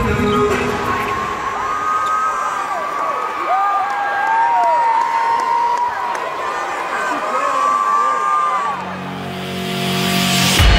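Gymnasium crowd cheering and shouting, with several drawn-out high-pitched tones gliding up and down through the middle. Near the end a low hum of an outro sting starts.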